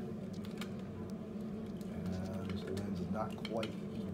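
Light plastic clicks and taps as the clear plastic cornea piece of an anatomical eye model is fitted back into place, over a steady low hum.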